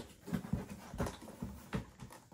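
A cardboard box being opened and handled: several dull knocks and rustles as its flaps are pulled and bumped.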